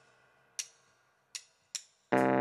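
Quiet break in the runway soundtrack: three sparse hi-hat ticks, each ringing briefly, the last two close together.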